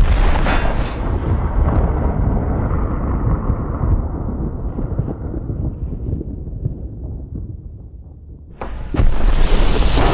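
A plastic test grenade exploding: a loud blast whose deep rumble slowly dies away over several seconds. A second blast starts about nine seconds in.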